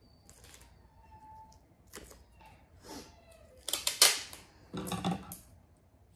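Duct tape being worked off the roll and cut with scissors: a few light crackles, then two loud rasping rips about four and five seconds in.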